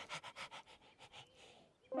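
Cartoon puppy panting in quick, short breaths, about six a second, fading out.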